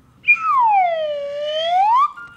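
Slide whistle played in one long swoop: a short high squeak, then a pitch that slides down for about a second and climbs back up near the end.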